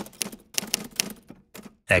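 Keys being struck on a portable manual typewriter: a quick, irregular run of sharp clacks, several a second, pausing briefly near the end.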